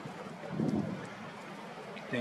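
Outdoor ambience dominated by wind rushing on the microphone, with a brief low swell about half a second in.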